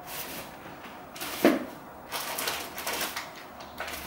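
A kitchen drawer is pulled open and things are handled in and around it: one sharp knock about one and a half seconds in, then rustling and a few small clicks.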